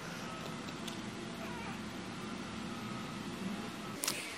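Faint, high mewing cry from a small pet over a steady room hum.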